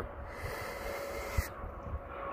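A person's breath while hiking uphill: one long exhale lasting about a second and a half that stops suddenly.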